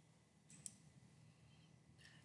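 Near silence: room tone, with a faint short click about half a second in.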